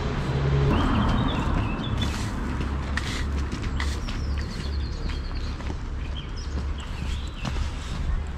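Outdoor city street ambience while walking up a cobbled lane: a steady low traffic rumble, scattered footsteps, and faint bird chirps.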